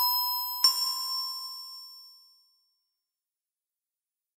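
The closing notes of a short bell-like chime jingle: one note ringing, a last note struck under a second in, both ringing out and fading to silence by about two and a half seconds.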